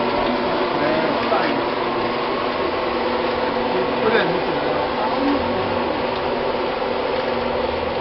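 Electric pan mixer for block-making mix running, with a steady motor hum and the churn of the mix in its drum; voices are heard faintly over it.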